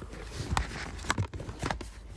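Plastic peak of a Leatt full-face downhill helmet being unclipped by hand: a few sharp plastic clicks about half a second apart as the peak's clips come free.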